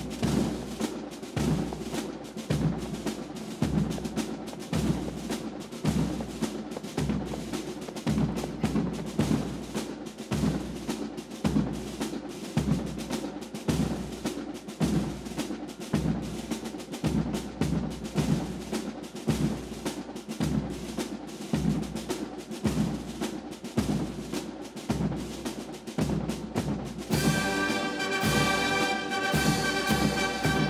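Military band drums beating a steady march beat. A brass band comes in near the end.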